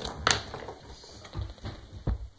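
Fountain pens clicking and tapping against one another as one is picked out of a case: a sharp click just after the start, then a few softer taps.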